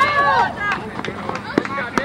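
Overlapping voices of players and spectators talking and calling out, with a sharp smack just before the end as a pitched softball lands in the catcher's mitt.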